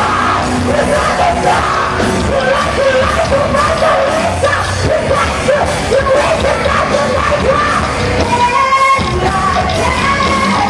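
Live heavy rock band playing loud: a woman singing and yelling over electric guitars and drums.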